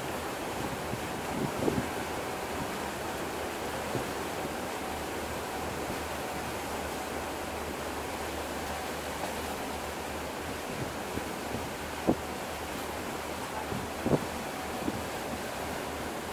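Steady rush of water and wind on the deck of the coastal ship MS Finnmarken under way, with a low steady hum underneath. A few brief knocks stand out, the loudest about twelve and fourteen seconds in.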